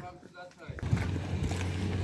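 A car engine running close by: a low steady hum with a rumbling noise that comes in under a second in.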